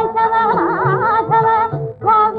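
A woman singing a Carnatic devotional song in an early film soundtrack recording, her voice wavering through ornamented turns about half a second in. Underneath run a steady held accompanying note and a soft repeating beat, and the phrase breaks off briefly near the end.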